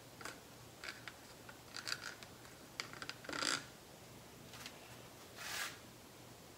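Faint, scattered clicks and light rattles of a metal ball chain (a ceiling-fan pull chain) being handled and lifted, with a short scraping swish about three and a half seconds in and a softer one near the end.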